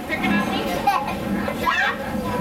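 Children's voices chattering and playing inside a railway passenger coach, with a steady low rumble of the moving train underneath.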